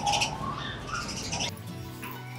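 Sparrows chirping in quick high bursts, cut off suddenly about a second and a half in.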